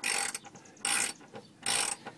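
Socket ratchet wrench clicking in three short runs, about 0.8 s apart, as it is worked back and forth on a leaf-spring mounting bolt.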